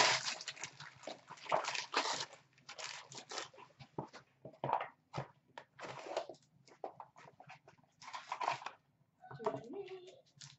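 Hands handling a card pack wrapper and small white cardboard boxes: crinkling, rustling and scraping in irregular bursts, busiest in the first few seconds.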